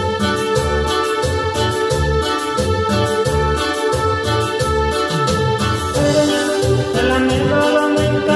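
Cumbia-style music played live on an arranger keyboard: an organ- and piano-like melody and chords over a steady, even drum and bass rhythm. The arrangement shifts to a new passage about six seconds in.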